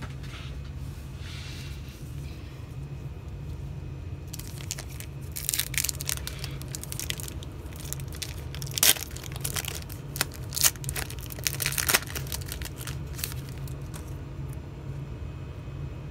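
A foil Prizm Draft Picks football-card pack being torn open by hand: irregular crinkles and sharp rips of the metallic wrapper, loudest between about five and twelve seconds in. A steady low hum runs underneath.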